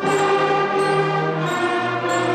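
Beginning sixth-grade concert band playing together in held notes. The band comes in at the start and moves through a few sustained notes, about one every half second to second.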